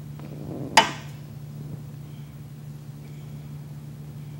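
A steady low hum with a single sharp knock just under a second in.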